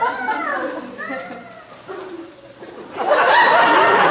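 A voice sings a few sliding notes that fade out. About three seconds in, audience laughter breaks out and keeps going.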